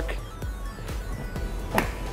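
Background music, with a sharp click near the end as a screwdriver pries a stuck rear seat cushion clip loose.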